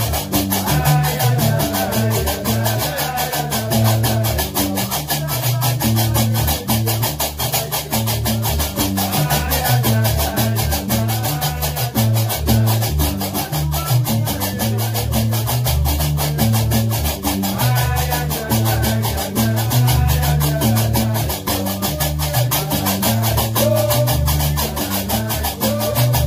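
Gnawa music: a guembri playing a deep, repeating bass line while qraqeb (iron castanets) clack in a fast, steady, driving rhythm over it.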